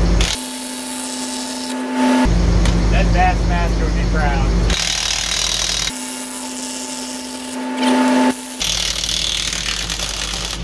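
Cordless impact wrench running on a wheel's lug nuts in two steady bursts of about two seconds each, the first starting just after the opening and the second a few seconds later. An engine idles in the background between the bursts.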